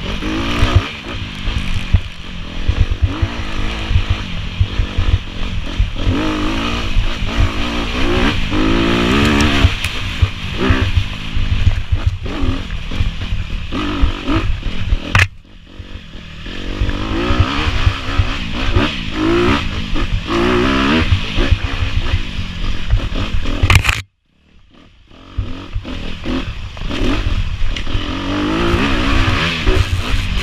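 Off-road vehicle engine revving up and down as it rides a rough trail, with heavy buffeting and rattle on the mounted camera. The sound dips briefly about halfway through, then cuts to near silence for about a second around three-quarters of the way through.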